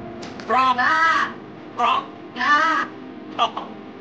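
A person's voice making three loud, wordless, squawking cries, each rising and falling in pitch, followed by a couple of short clicks.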